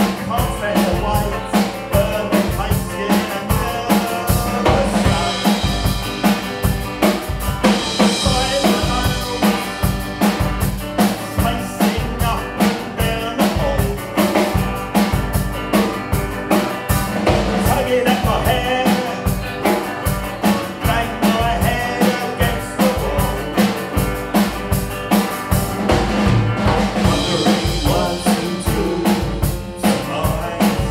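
A live rock band playing: electric guitar over a drum kit keeping a steady, fast beat.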